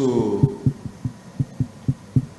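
A steady, low thumping beat, about four thumps a second, under the trailing end of a man's drawn-out word at the start.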